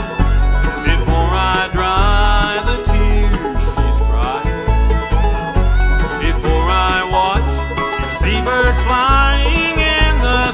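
Bluegrass band playing an instrumental break: fiddle playing sliding notes over banjo picking, acoustic guitar and upright bass.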